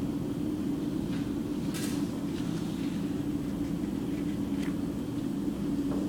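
A steady low hum in the room, with faint rustles of paper being handled about two seconds in and again near five seconds.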